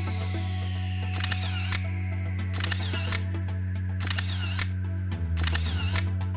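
Four camera-shutter sound effects about a second and a half apart, each a click, a short whir and a second click, over steady background music.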